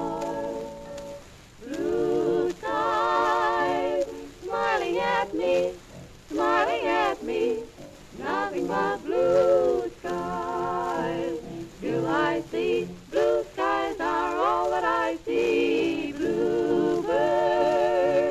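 Female vocal trio singing in close harmony with wide vibrato, in phrases, from a 1927 Columbia 78 rpm record.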